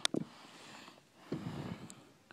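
Quiet handling noise from a handheld camera being moved about: faint rustling, with a soft low rustle about a second and a half in and a small click near the end.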